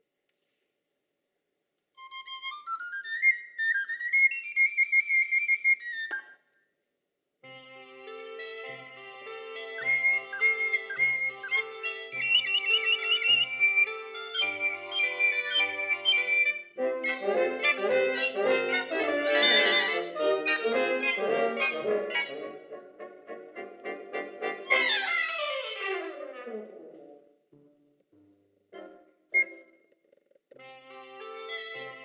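A cobla playing a sardana. It opens with a solo on the flabiol, a small high-pitched pipe, in a rising phrase. After a short break the tenores, tibles and brass join in, and the full cobla grows louder. The full ensemble ends in a falling run about 25 seconds in, followed by a brief pause with a few scattered notes.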